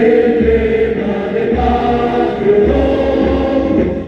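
A group of voices singing a slow hymn together in long held notes, the tune stepping to a new note about once a second.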